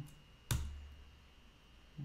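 A single sharp keyboard keystroke about half a second in, a click with a brief low thud, the Enter key being pressed to run a typed terminal command.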